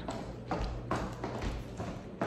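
A few light knocks and taps at uneven intervals, from handling or movement on a hard surface.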